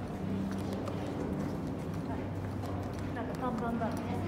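Footsteps of a person walking on a hard floor in an echoing underground pedestrian tunnel, about two steps a second, over a steady low hum. A voice-like sound wavers up and down near the end.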